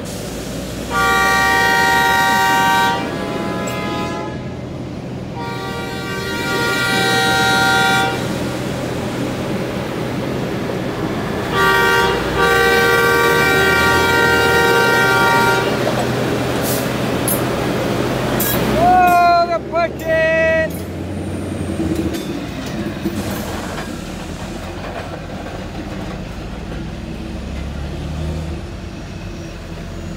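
Titan Trackmobile's air horn sounding the grade-crossing signal: long, long, short, long. About 19 seconds in comes a further shorter blast whose pitch wavers. Its diesel engine runs underneath throughout.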